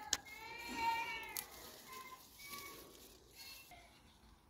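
Sharp snaps of leaves and stems as garden plants are picked by hand, and near the start a single drawn-out animal cry, rising then falling, about a second long, followed by a few faint short calls.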